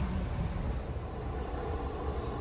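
Steady low rumble and hiss of a fuel pump dispensing into a car, with no distinct tones or knocks.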